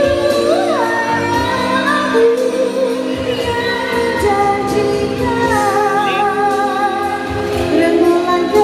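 A woman singing a slow, ornamented melody through a handheld microphone and PA, with held notes that slide between pitches. Live accompaniment with a cajon beat plays underneath.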